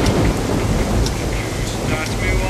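Thunderstorm: a continuous low rumble of thunder over the steady noise of rain.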